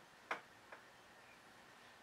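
Near silence with two faint clicks, a sharper one about a third of a second in and a softer one soon after, from a small plastic toy figure being handled.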